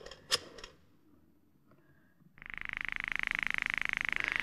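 A click, then from a little past halfway a steady, rapidly pulsing telephone ring: a call being rung through on the line.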